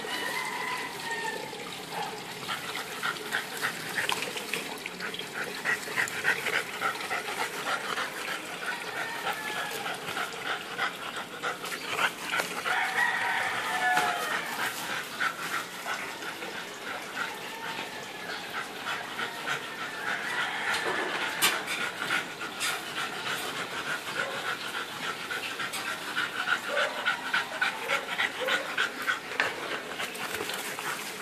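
Dogs at play, with a bulldog panting heavily.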